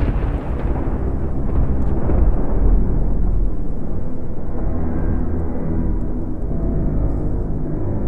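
Sci-fi horror film soundtrack: a low rumble dying away from a boom, then a dark, droning score of held low tones that takes over from about three seconds in.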